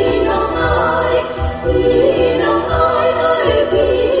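Stage music: a group of voices singing together over backing music with a pulsing bass.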